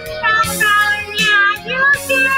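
A woman singing held, gliding notes while strumming a small acoustic guitar, with a strum about every three-quarters of a second.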